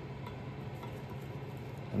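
Steady low background hum with a few fixed low tones and no distinct knocks or clicks.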